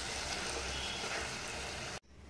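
Steady sizzling of spiced bottle gourd and tomato cooking in an open pressure-cooker pan on a gas burner, cutting off suddenly at the end.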